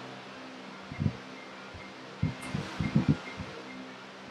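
Electric fan humming steadily, with a few soft thumps about a second in and again near the end. A faint string of short, high beeps sounds through the middle.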